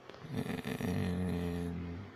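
A man's low, drawn-out hum or filler "mmm", held steady for over a second.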